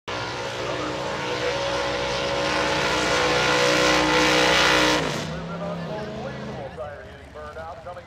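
Drag-race car's engine held at high revs during a burnout, spinning the rear tyres, loud and building for about five seconds, then dropping off in pitch as the throttle is released. A public-address announcer's voice follows.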